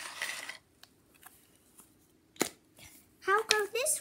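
Rustle of small toy pieces being handled, then quiet and a single sharp click about two and a half seconds in as a little toy tub is set down; a child's voice starts near the end.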